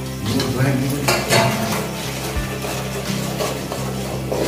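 A long-handled ladle stirring and scraping vegetables frying in oil in an aluminium pot, knocking against the pot's sides a few times in the first second and a half, over the sizzle of the frying.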